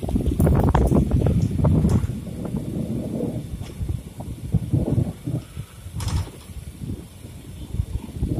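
Wind buffeting the microphone over the running noise of a passenger train, heard from an open coach doorway; the rumble gusts loudest in the first two seconds, with a sharp click about six seconds in.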